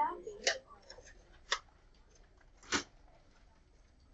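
Three short, sharp clicks over quiet classroom background, about a second apart; the third is a fuller knock.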